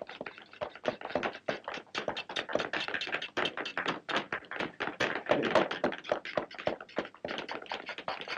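Many cobblers' hammers tapping on shoes at the bench, an irregular, overlapping clatter of several taps a second that never stops.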